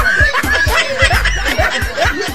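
People laughing over background music with a fast, steady beat.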